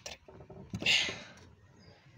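A few light clicks and a short scraping noise about a second in, as a bearing and its retaining piece are pressed by hand onto a VW Beetle's steering column shaft.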